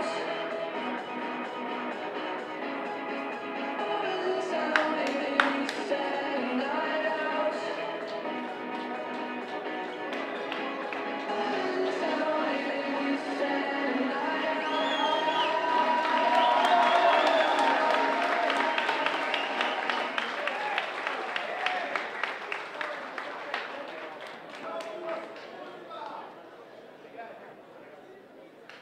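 Background music over the PA in a large hall, with crowd voices and some scattered clapping. The music is loudest a little past the middle, then fades toward the end.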